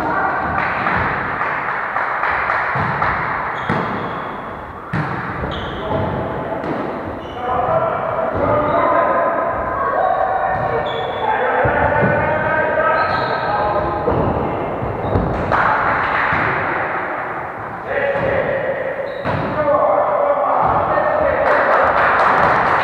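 A volleyball being struck and bouncing on a wooden gym floor, with several sharp thumps. Players' voices call out through most of it, echoing in the large hall.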